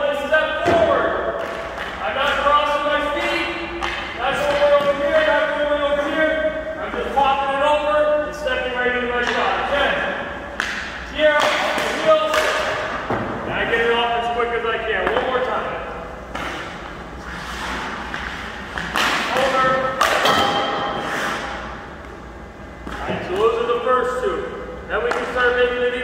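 A man talking through most of it, broken by several sharp knocks of a hockey stick striking a puck on the ice.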